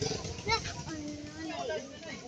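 Background voices of people and children talking, with one drawn-out child's voice in the middle.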